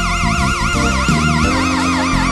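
Slow blues band track: a lead guitar holds a long high note with fast, even vibrato, about six wobbles a second, over bass and sustained chords.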